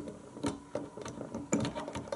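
Hand-cranked 1900 Robert W. Paul 'Century' 35mm projector mechanism with a three-slot intermittent movement, clicking and clacking as it turns, with about three unevenly spaced clicks a second. The mechanism has a very high resistance and tends to lock when starting.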